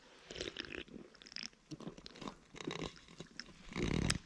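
A man drinking canned coffee: a string of soft, irregular gulps, swallows and mouth clicks.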